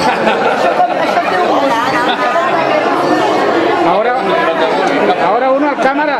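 Overlapping chatter of a group of people talking over one another, with laughter near the start.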